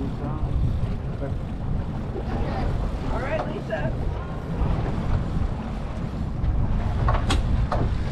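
Steady low rumble of a fishing boat's engine running, mixed with wind buffeting the microphone. Faint voices come in around the middle, and a couple of sharp clicks near the end.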